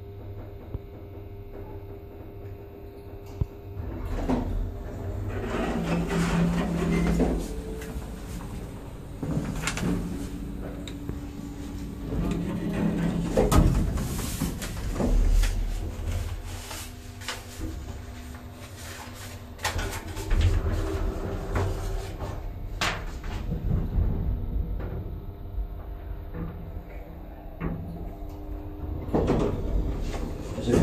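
Nechushtan-Schindler hydraulic elevator in operation, heard from inside the cab. A low hum grows louder about four seconds in, with repeated clunks and knocks through the rest.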